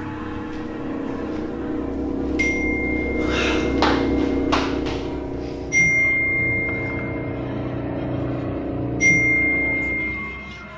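Three phone text-message alert pings, each a sudden bright tone that rings on, about three seconds apart, as messages arrive. Under them runs a low, sustained musical drone.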